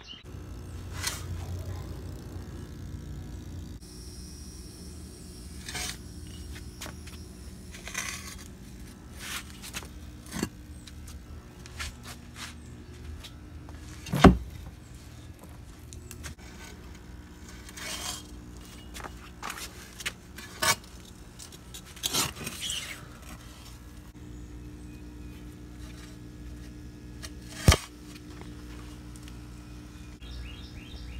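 Metal shovel digging in loose sandy soil: scattered scrapes and crunches of the blade going into the dirt, with two sharp knocks standing out, one about halfway through and one near the end.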